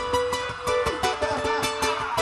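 Live Andean fusion music in which a charango plays a quick run of plucked notes, the heavy bass of the band having dropped away just as the charango comes in.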